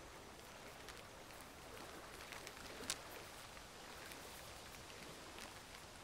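Faint rain ambience, a soft steady hiss with scattered drip-like ticks, one a little louder about three seconds in, with no music playing.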